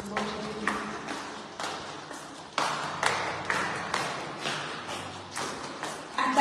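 Footsteps going down a staircase: a run of sharp knocks, roughly two a second and a little uneven, each with a short ringing tail.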